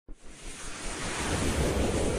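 Intro sound effect: a rush of noise like wind or surf that starts suddenly and swells steadily louder.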